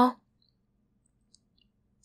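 A woman's voice trails off right at the start, then near silence, broken only by a few very faint tiny clicks about a second and a half in.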